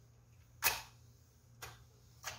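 A clothes iron being worked over cloth on an ironing board: a short, sharp sound a little over half a second in, and a fainter one about a second later, over a low steady hum.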